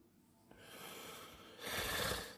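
A man's breathing close to the microphone: a faint breath starting about half a second in, then a louder one near the end.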